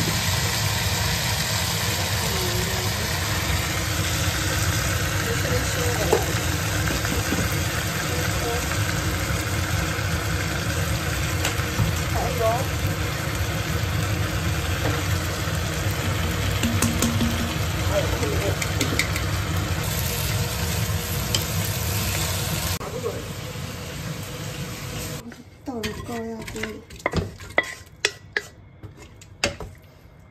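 Beef, tomato and spices sizzling in a hot wok as a wooden spatula stirs them, over a steady low hum. About 23 seconds in the frying sound fades, and scattered knocks and scrapes follow as the food is moved into an aluminium pressure cooker.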